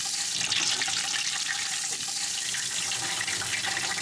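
A breaded pork cutlet (tonkatsu) deep-frying in hot oil: a steady, dense sizzle of bubbling oil.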